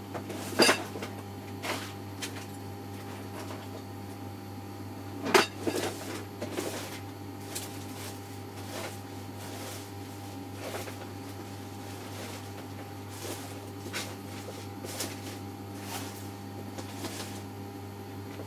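Scattered clicks, knocks and clatter of small objects being moved about as someone rummages through a storage container for a tape measure. The loudest knocks come about half a second and about five seconds in, with sparser clicks after, over a steady low hum.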